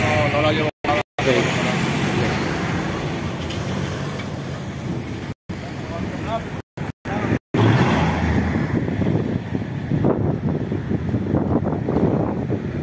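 Street traffic and running vehicle engines at a roadside, with people's voices mixed in; the sound cuts out abruptly several times, around a second in and again between about five and seven and a half seconds in, and is louder and rougher after that.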